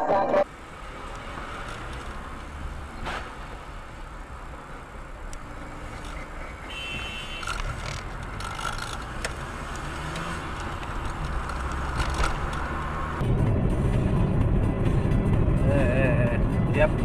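Car engine and road noise, a steady low rumble that grows louder and heavier about thirteen seconds in. Music cuts off abruptly about half a second in.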